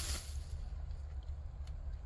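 Low, steady rumble of wind on the microphone, with a brief rustle at the very start as hands work inside a wire-mesh colony trap standing in shallow water, and a few faint clicks near the end.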